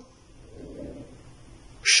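A short pause in a man's Bengali lecture with only a faint low murmur; his speech starts again just before the end.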